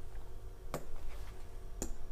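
Two sharp taps on an interactive whiteboard, about a second apart, over a low steady hum.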